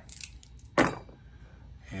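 Dice for a tabletop baseball game rolled into a hexagonal dice tray: a few light clicks, then one sharp clatter a little under a second in.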